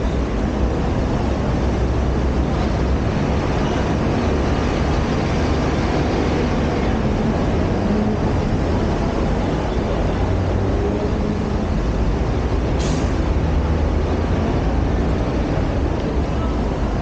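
Steady low rumble of nearby road traffic, with a brief high squeak near the end.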